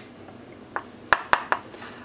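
A spoon knocking against the side of a bowl while stirring melting oils: four short clicks in quick succession in the middle, the second and third the loudest.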